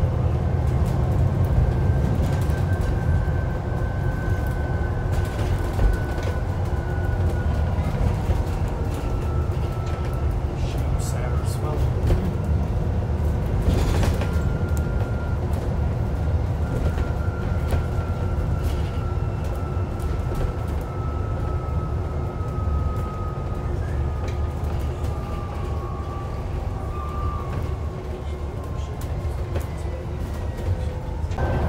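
Alexander Dennis Enviro400 MMC double-decker bus under way, heard from the upper deck: a deep engine and road rumble with a thin whine that drifts slowly lower in pitch, and a few scattered rattles.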